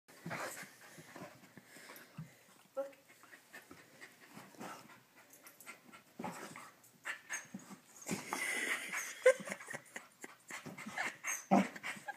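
Border collie breathing close to the microphone in short, irregular bursts, heavier in the second half.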